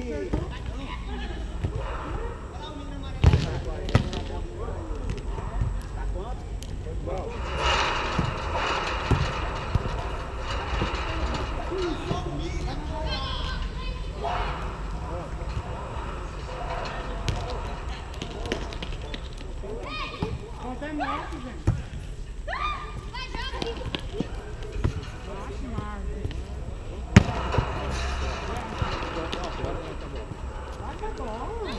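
A volleyball being struck by hands in a rally: a few sharp smacks, the loudest about three seconds in, a second later and near the end, over players and onlookers calling out and talking.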